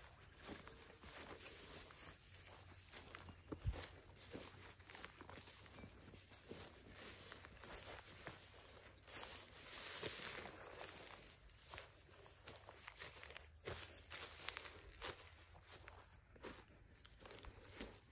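Faint footsteps walking through grass, an irregular run of soft rustles and light thuds.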